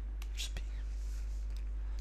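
A steady low electrical hum on the recording, with a few faint clicks and a soft breath partway through.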